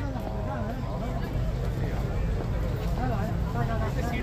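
Background chatter of a crowd of people talking, with no one voice standing out, over a steady low rumble.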